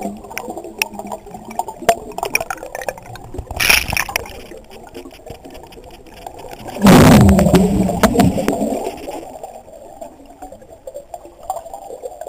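Scuba diver breathing through a regulator underwater: a brief hiss about four seconds in, then a loud burst of exhaled bubbles about seven seconds in that fades over about two seconds. Faint crackling clicks run underneath throughout.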